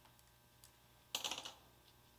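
Metal hand tools clinking and rattling against each other as they are picked up off a workbench: a few faint ticks, then one short rattle a little past the middle.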